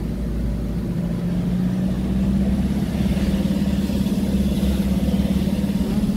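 Engine of the vehicle being ridden in, running with a steady low hum while driving along; it grows louder about two seconds in.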